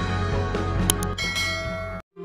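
Intro music with a subscribe-button sound effect: a short click about a second in, then a ringing bell chime held over the music, all cutting off suddenly at the end.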